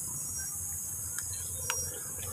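Crickets chirping steadily, with a faint low rumble under them. A faint click comes near the end, as the switch for the motorcycle's mini driving light is flipped and the yellow beam comes on.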